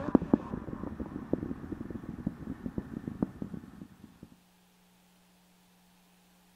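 Distant rumble and crackle of the Space Launch System rocket climbing under thrust, fading out about four seconds in. A faint steady hum remains after it.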